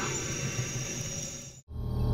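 Night jungle ambience: insects keep up a steady, high-pitched drone over a soft hiss, which cuts off abruptly about one and a half seconds in. A low rumble starts right after.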